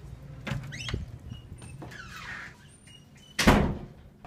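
A heavy wooden restroom door being pushed open and swinging shut, with a couple of knocks about half a second and a second in and a loud bang near the end, over a steady low hum.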